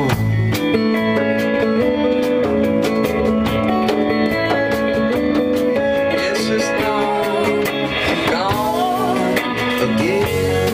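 Live rock band playing an instrumental passage led by a Fender Telecaster electric guitar over bass and drums, with bent, gliding guitar notes in the second half.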